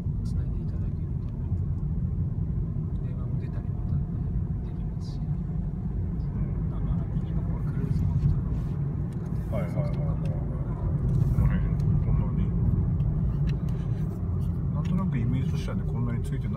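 Steady low rumble of engine and road noise inside the cabin of a Mazda Demio XD, a 1.5-litre turbodiesel, while it is driven.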